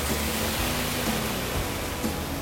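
A car driving through a flooded street, its tyres throwing up water in a steady rushing hiss, with a pop song playing faintly underneath.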